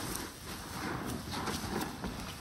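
Bath sponges squeezed and scrubbed by rubber-gloved hands in a basin of soapy water: wet squelching and foam crackle, repeated several times a second.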